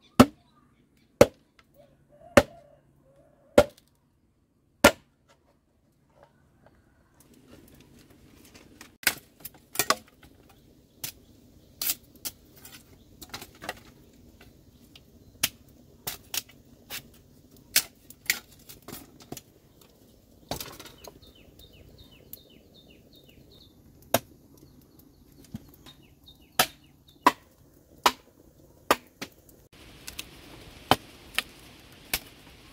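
Machete blade chopping into green bamboo, with sharp single strikes. They come evenly, about one every second and a quarter, for the first few seconds, then irregularly through the rest, as the bamboo is cut and split into lengths.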